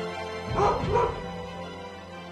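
Two short, high dog yelps about half a second and a second in, over steady background music.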